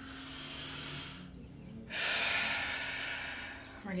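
A woman takes a deep breath in through a yoga side stretch: a soft breath in for about two seconds, then a longer, louder breath out as she comes up from the stretch.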